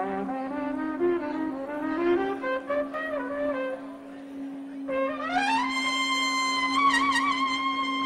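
Trumpet solo over a live band: a run of quick notes, then a slide upward about five seconds in to a long high held note, over a steady low note from the band.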